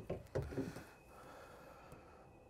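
Faint handling sounds of a van's rear door being swung open, then near silence.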